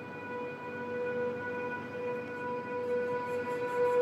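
A steady, single-pitched drone with overtones, held without change, over a faint hiss.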